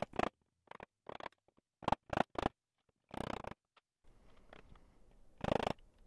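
Hand saw cutting walnut in short strokes, about nine of them in the first three and a half seconds, then a pause and one more stroke near the end.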